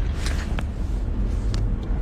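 Steady low rumble of a car heard from inside the cabin, with a few short clicks and rustles of a phone being handled.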